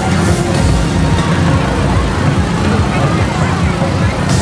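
Loud festival street noise: music played over loudspeakers, heavy in the bass, mixed with the voices of a crowd.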